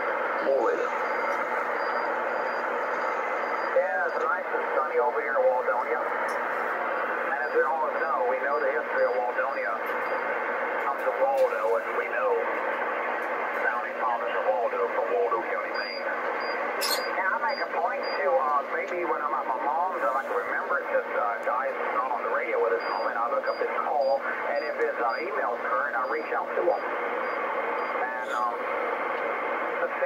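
A distant amateur operator's voice received on single sideband through a Kenwood TS-450S transceiver's speaker. The speech is thin and confined to the mid-range, with a steady low hum under it.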